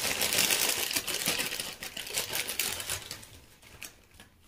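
Small hard plastic alphabet pieces being rummaged and stirred by hand, a dense rattling clatter that dies away about three seconds in.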